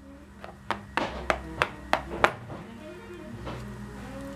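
A game token tapped from space to space across a cardboard Monopoly board, making a run of light clicks about three a second in the first half, over faint background music.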